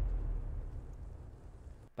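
A deep, low rumble from the music video's soundtrack, like the tail of a boom, slowly dying away and cutting off sharply near the end.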